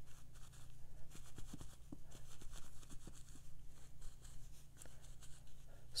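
A bunched facial tissue lightly tapped and dabbed on wet watercolour paper, a string of soft, irregular dabs blotting up paint to soften the background.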